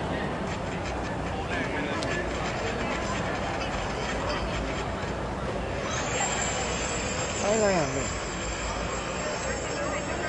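Murmur of many overlapping voices from spectators and team staff, with one voice calling out loudly in a falling call about seven and a half seconds in.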